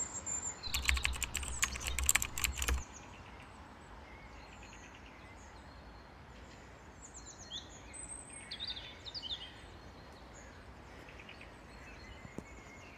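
Faint outdoor ambience with small birds chirping: clusters of short, high calls from about seven to nine and a half seconds in and again near the end. Over the first three seconds, the loudest part, there is a rapid run of clicks over a low rumble.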